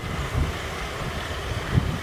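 Outdoor background noise: an irregular low rumble of wind on the microphone under a steady faint hiss.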